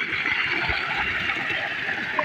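Water gushing steadily from the 3-inch delivery pipe of a DC solar pump, splashing into a metal pan and the flooded ditch below.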